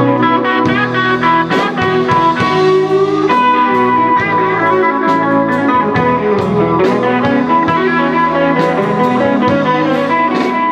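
A live band playing an instrumental passage, an electric guitar to the fore over a steady beat.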